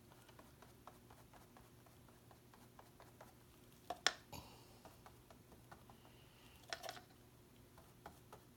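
Faint handling sounds from painting with a brush: scattered light clicks, with two sharper knocks about four and seven seconds in.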